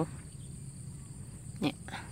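Steady high-pitched insect noise, typical of crickets, with a brief spoken word near the end.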